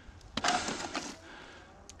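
A sharp knock about a third of a second in, followed by about half a second of scraping and rustling: equipment being handled among rocks and dry leaves.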